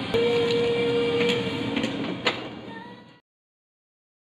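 Shop background noise with a steady hum for about two seconds and a few sharp clicks, fading out to silence about three seconds in.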